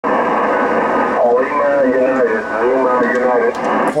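A voice received over shortwave single-sideband on a Yaesu ham transceiver, speaking through steady radio hiss in the narrow, telephone-like audio of an SSB receiver. The hiss starts at once; the distant voice comes in about a second in and stops just before the end.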